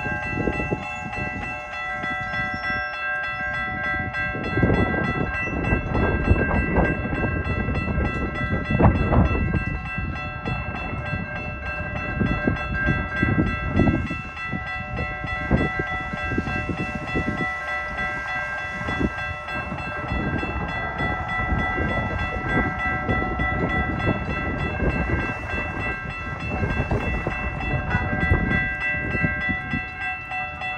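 Commuter train sounds with wind buffeting the microphone in uneven low gusts. A set of steady tones holds throughout, and the rumble is loudest from about four to fourteen seconds in.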